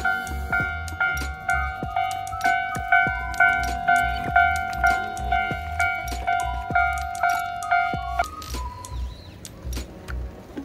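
Japanese railway level-crossing alarm bell ringing its repeated 'kan-kan' strokes about twice a second. It stops abruptly about eight seconds in.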